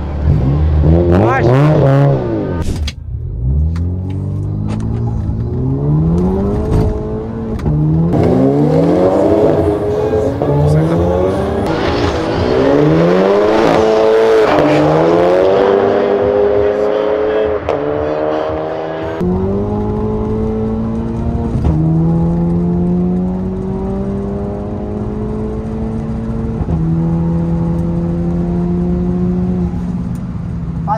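Two turbocharged cars, a Toyota Supra MK5 and a Volkswagen Jetta TSI, accelerating flat out in a drag race. The engine note climbs and drops back at each upshift, several times. Later it settles into a steadier, slowly rising note in the higher gears.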